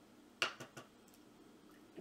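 A shaving razor clicking against a water container as it is dipped to be rinsed: one sharp click about half a second in, followed by two fainter ticks.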